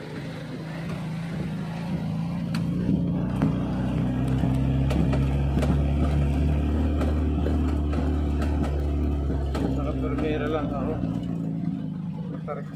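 Car engine and road noise heard from inside the cabin while driving, a steady low hum that grows louder over the first few seconds and eases off near the end.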